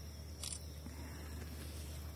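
Faint steady low hum with a single sharp click about half a second in.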